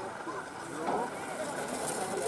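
Several people's voices talking and calling out at a distance, overlapping, over a steady background hiss.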